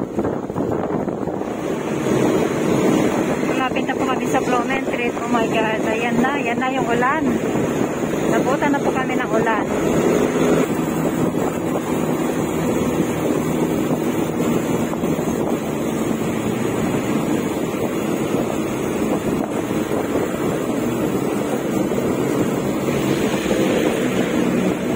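Steady road and engine noise of a moving vehicle, with wind buffeting the microphone. Voices are heard briefly, from about four to ten seconds in.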